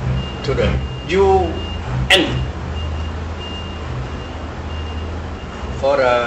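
A high electronic beep repeating about twice a second over a steady low rumble, with a few short voice sounds in the first two seconds.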